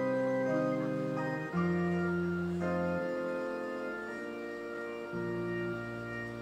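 Organ playing slow, held chords over low bass notes, the chord changing every second or two.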